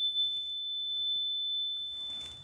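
The single high, clear note of a handheld energy chime, a metal tone bar on a wooden resonator block, ringing on after a mallet strike and slowly fading.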